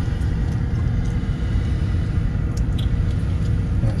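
Steady low rumble of a car driving slowly, heard from inside the cabin: engine and road noise.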